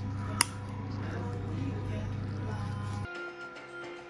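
A single sharp click from the Iluvien intravitreal implant applicator as its button reaches the end of the button track, the sign that the fluocinolone implant has been injected. Soft background music runs underneath and stops about three seconds in.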